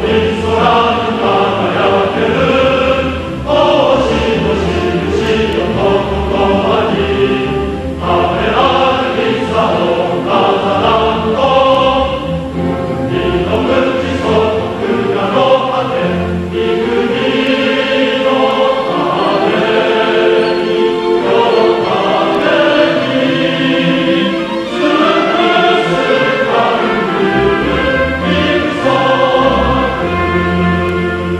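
Choir singing with orchestral accompaniment in a choral cantata, in phrases with short breaks between them.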